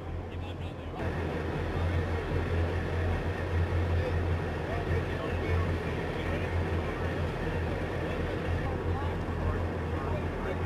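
Diesel engines of tracked assault amphibious vehicles running with a steady low drone, growing louder about a second in.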